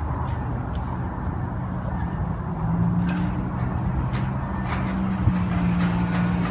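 A low, steady mechanical hum, like an engine or machinery running, over outdoor background noise; it grows louder about halfway through.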